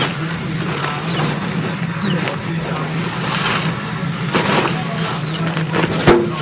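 A large plastic tarpaulin rustling and crinkling in repeated swishes as it is folded by hand, over a steady low hum like an engine running.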